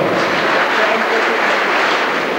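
Crowd applauding steadily, with faint music underneath.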